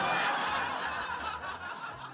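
Studio audience laughing at a punchline, loudest at the start and dying away.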